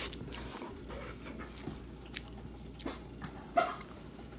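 Close-up eating sounds: a person chewing food, with small scattered wet mouth clicks, a few louder ones in the second half.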